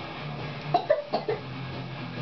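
A few short coughing sounds from a person, bunched about a second in, over faint background music.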